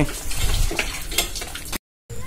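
Water gushing from a cast-iron borewell hand pump's spout and splashing into a vessel while the pump is worked, with a few sharp metallic knocks from the pump. It cuts off abruptly near the end.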